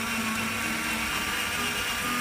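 Black & Decker cordless drill running steadily at speed with a constant whine, spinning a potato on its bit while a hand peeler strips the skin off.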